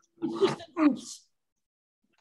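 A person's brief vocal sounds: two short voiced sounds, then a breathy hiss. They stop a little over a second in.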